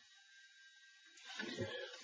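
Near silence, then from a little past a second in, a soft rustling scrape of a wooden straight edge being slid down across the drawing paper by hand.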